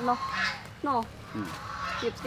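Two short animal calls, each falling steeply in pitch, about a second in.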